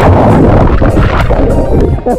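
Loud rushing and buffeting of water against a camera microphone as the camera is dunked in shallow lake water and splashed, cutting off near the end.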